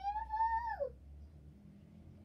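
A young girl's voice singing one high wordless note that rises slightly and falls away after about a second.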